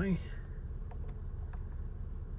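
Steady low hum inside a parked car's cabin, with a few faint clicks as the steering-wheel menu buttons are pressed.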